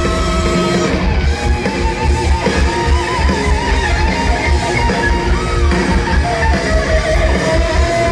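Heavy metal band playing live at full volume: electric guitars over fast, driving drums and bass. About a second and a half in, a lead line holds and bends a high note with a wide vibrato for several seconds.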